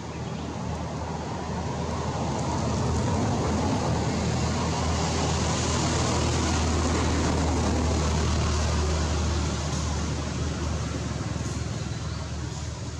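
A passing motor vehicle: engine hum and road noise that swell over the first few seconds, hold, then fade near the end.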